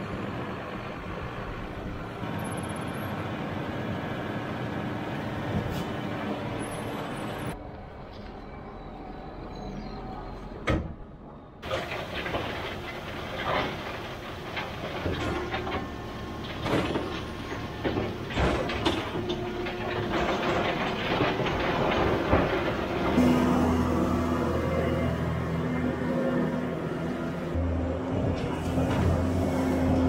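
Tractor engine running, then a Vermeer bale processor shredding a round bale of hay, with many irregular knocks and clatters over a steady machine drone.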